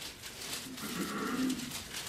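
Bible pages rustling as they are leafed through, with a short low hum from someone in the room about a second in.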